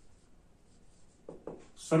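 Faint scratching of writing strokes during a pause in speech, with a man starting a word near the end.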